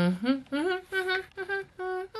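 A woman humming a short tune. A long note first dips and slides in pitch, then comes a string of short, separate notes, most of them held on one pitch.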